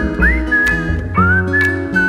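A whistled melody in clear, pure notes, each sliding up into its pitch, carried over a live band accompaniment of plucked upright bass and strummed acoustic guitar.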